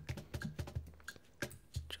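Computer keyboard keystrokes: a quick, uneven run of clicks as shortcut keys are pressed.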